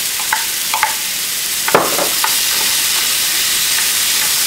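Shrimp and bell pepper sizzling in oil in a hot skillet, stirred with a spatula. A steady high sizzle runs throughout, with a few short scrapes and knocks of the spatula against the pan, the sharpest a little under two seconds in.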